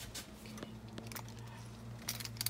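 Pot of okra and salted fish boiling on the stove: a few faint bubbling pops over a steady low hum.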